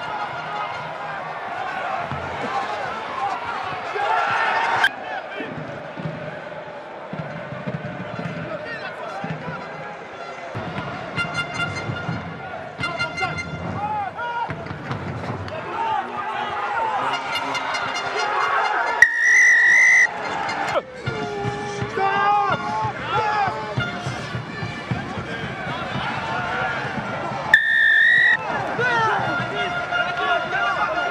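Two long blasts of a referee's whistle, the first about two-thirds of the way through and a shorter one near the end, over continuous stadium crowd noise and voices.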